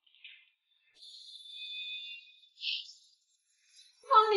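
A brief high, shimmering music cue or sound effect that swells for about two seconds, ending in a short bright burst.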